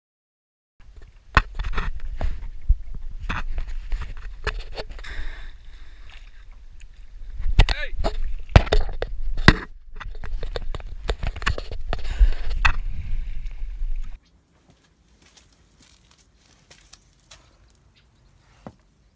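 Water sloshing and splashing with a heavy wind rumble on a camera at the water's surface, with sharp knocks and some voices. It cuts off suddenly about 14 seconds in, leaving only faint ticks.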